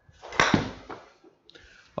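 A golf club striking a ball off an indoor hitting mat about half a second in, a sharp crack that rings briefly. Fainter knocks and a short hiss follow near the end.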